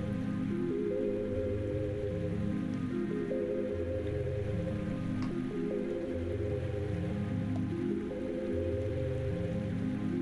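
Background music: slow, calm instrumental music of held chords over a soft bass, moving to a new chord every couple of seconds.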